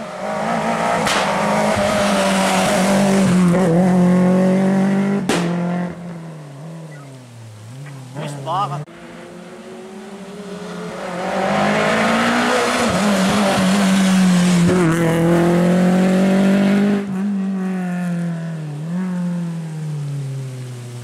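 Rally cars' engines at full throttle on a tarmac special stage, one car after another. The engine note climbs and holds high through two long loud stretches, dipping in pitch between them as the cars lift off and brake into the bend.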